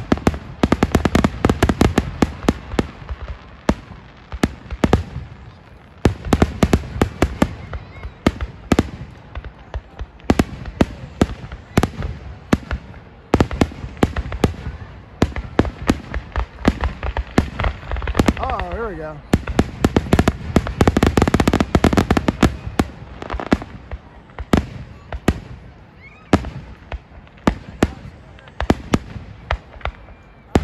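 Aerial fireworks shells bursting in a rapid, loud barrage of booms and crackles, with a few brief lulls between waves.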